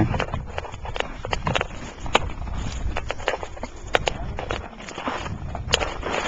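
Footsteps crunching through patchy wet snow and grass, in irregular steps, over a steady low rumble on the microphone.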